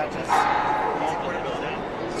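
People talking in a busy hall, with a short, loud, high-pitched voice sound about a third of a second in that fades within about a second.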